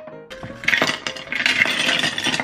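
Ice pouring into a glass tumbler, clattering against the glass in two quick runs, the second one longer.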